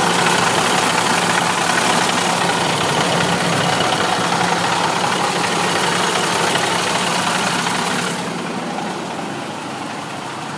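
A 2001 International 4900 dump truck's diesel engine idling steadily, close up. It gets quieter about eight seconds in.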